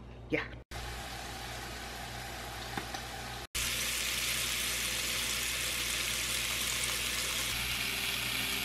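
Chicken drumsticks and hot dogs sizzling on a George Foreman electric contact grill, as a steady hiss. It is fainter at first and louder after a cut about three and a half seconds in.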